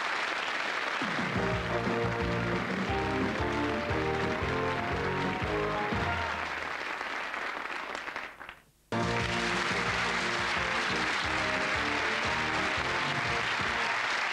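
Studio audience applause over a game show's theme music. About eight and a half seconds in, both stop briefly at the part break, then the applause and theme return abruptly.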